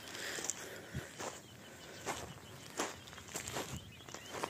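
Footsteps of a person walking over grassy, sandy ground, a soft step roughly every half second to second.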